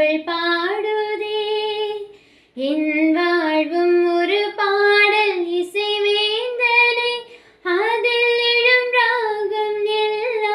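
A young woman singing solo and unaccompanied, in sung phrases of a few seconds each with brief pauses for breath between them.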